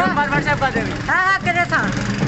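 Several young men's voices talking and calling out over one another close to the microphone, over a low steady background hum.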